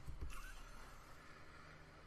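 A quiet pause: faint low hum and room noise, with a brief soft sound just after the start.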